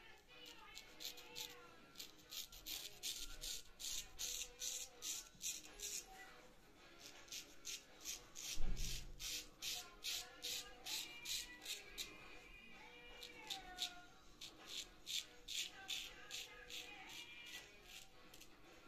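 Straight razor shaving lathered stubble on the neck and chin: runs of short rasping scrapes, about three a second, with a single low thump about halfway through.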